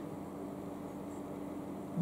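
Room tone: a steady low hum with a faint even hiss, with no sudden sounds.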